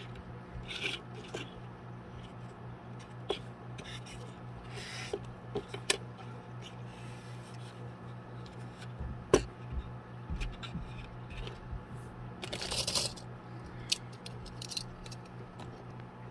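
Metal binder clips being clipped onto and adjusted on a small MDF dollhouse bench: a few sharp clicks scattered among the rubbing and scraping of handling, with a longer rub late on. A steady low hum runs underneath.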